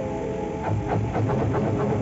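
Background music: several held tones with a quick run of short notes through the middle.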